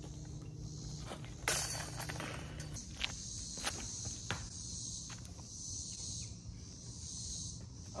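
A steady high insect chorus, with a rustling noise about a second and a half in, followed by a few sharp footfalls on a concrete tee pad during a disc golf throw.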